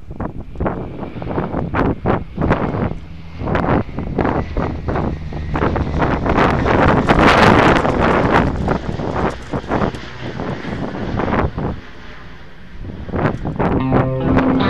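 Wind buffeting the camera microphone in rough gusts, loudest a little past the middle.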